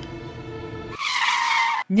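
Low, sustained music tones, then about a second in a short, loud screeching sound effect that cuts the music off abruptly.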